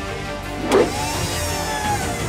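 Cartoon soundtrack of background music with a robot mech's mechanical sound effects: a short hit about three-quarters of a second in, then a whirring whine that glides slowly up and back down, like a motor powering up.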